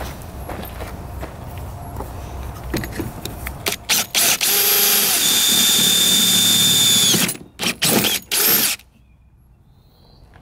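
Cordless drill boring into the top of the boat: after a few seconds of handling noise, a couple of short trigger bursts, then a steady high whine for about three seconds, then two or three short bursts before it stops near the end.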